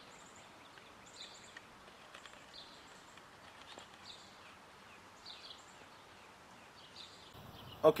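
Faint outdoor ambience with distant birds chirping now and then.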